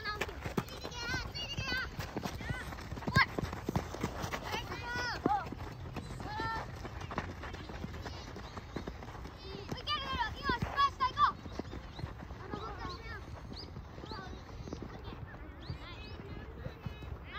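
Children shouting and calling to each other during a youth football match, with the crunch of running feet and ball strikes on the gravel pitch. A sharp knock stands out about three seconds in, and the shouts are busiest and loudest around ten to eleven seconds in.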